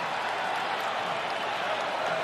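Large arena crowd cheering steadily, a dense even wash of voices and clapping.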